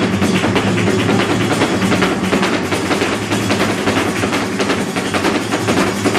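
Flamenco alegrías: a Spanish guitar strummed and plucked, driven by rapid hand clapping (palmas) and a dancer's percussive footwork (zapateado), a dense, fast rhythm of sharp claps and taps.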